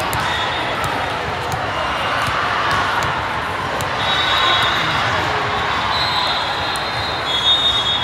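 Busy sports-hall din from many volleyball courts: crowd chatter, balls being hit and bouncing on the hardwood, and distant referee whistles, with a longer high whistle in the second half.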